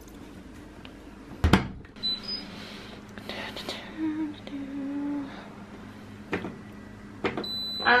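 Front-loading washing machine door pushed shut with a sharp thud about a second and a half in, followed by short electronic beeps and clicks of its control-panel buttons as the wash is set, over a low steady hum.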